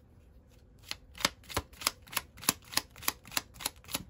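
A tarot deck being shuffled by hand: a steady run of light card clicks, about three a second, starting about a second in.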